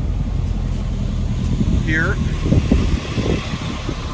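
Wind buffeting the microphone: a loud low rumble that eases about three seconds in, with a single spoken word midway.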